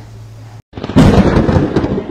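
A sudden loud rumbling noise with irregular cracks, starting just under a second in after a brief dead dropout where the audio cuts between clips.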